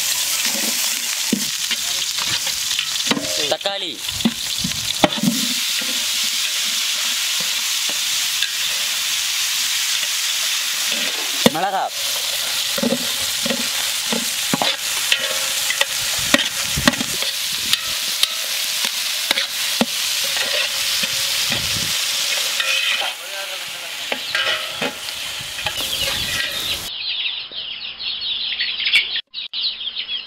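Sliced onions, tomatoes and green chillies sizzling as they fry in hot oil in a large aluminium pot, with a metal spatula scraping and knocking against the pot as they are stirred. The sizzling steadies then dies down after about 23 seconds, giving way to quieter, duller sounds near the end.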